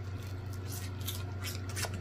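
Close-miked chewing of a fried chicken wing: scattered crunches and small wet mouth clicks over a steady low hum.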